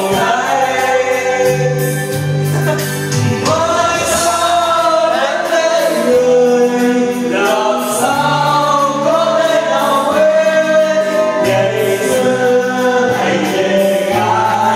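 Karaoke backing track with several voices singing along to a Vietnamese children's song, long held notes over a bass line and a steady beat.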